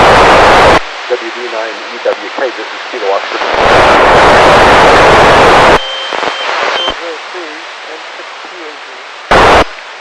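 FM satellite downlink heard on a radio receiver. Bursts of loud hiss come in three times, at the start, for about two seconds in the middle, and briefly near the end, where the weak signal drops out. Between them a faint, garbled voice of a station calling through the TEVEL-5 FM transponder comes through the noise.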